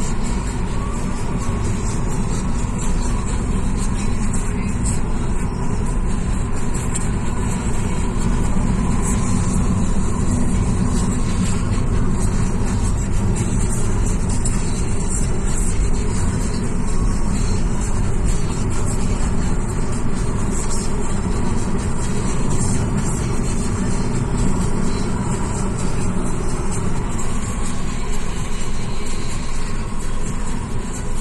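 Steady low rumble of a car driving, engine and tyre noise with no sudden changes.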